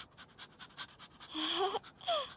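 A dog panting quickly and faintly, about five short breaths a second, with a brief rising vocal sound near the end.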